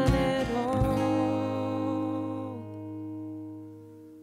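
The close of an acoustic country song. A held sung note and two cajon hits come in the first second, then the acoustic guitar's last chord rings out and fades away.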